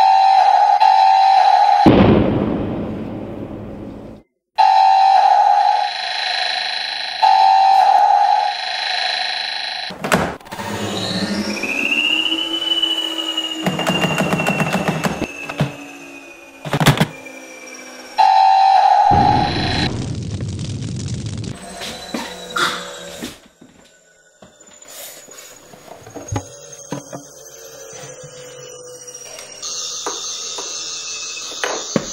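Sci-fi film sound effects of Dalek gunfire: a buzzing electronic zap heard four times, with bursts of noise that fade away, among music. A pitch sweep rises and then slowly falls, and a few sharp knocks cut in.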